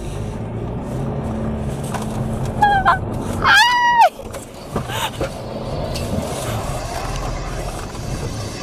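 Cabin noise of a Ford Ranger 2.2 pickup driving over rough dirt: a steady low rumble from its four-cylinder turbodiesel and the road. Midway, a woman gives two high-pitched squeals of laughter, the second longer, and it cuts off sharply just after four seconds.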